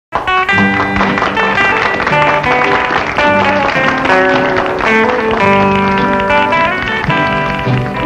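Country band playing the instrumental intro of a 1950s honky-tonk song, with a strummed acoustic guitar under sustained lead notes. The music starts abruptly at the very beginning.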